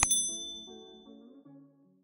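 Mouse-click sound effect followed by a bright notification-bell ding that rings out and fades over about a second and a half, over background music that fades out near the end.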